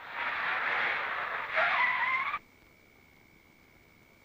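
A car pulls up and brakes to a halt: a rush of tyre noise, then a short tyre squeal rising in pitch about a second and a half in. Both cut off abruptly.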